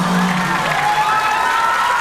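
Audience applauding and cheering, a steady wash of clapping.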